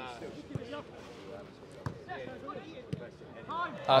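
Open-air football pitch ambience: faint distant voices of players and spectators, with three sharp knocks about a second apart as the football is kicked during passing play.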